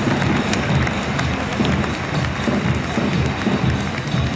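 Music played over a stadium public-address system, with a steady low beat, over crowd noise in a domed ballpark.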